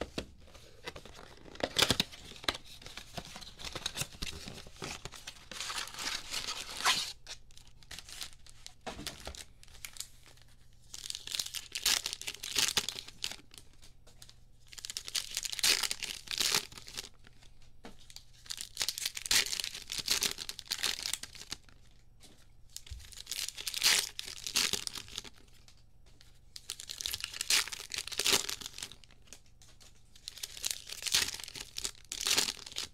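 Hands tearing open a cardboard trading-card blaster box and then ripping open its foil card packs, with the wrappers crinkling. The tearing comes in repeated short bursts every few seconds.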